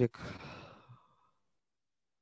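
A man sighing: one breathy exhale that fades away over about a second.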